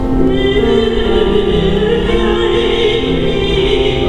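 A woman singing opera in a full classical voice, holding long notes, accompanied on a grand piano.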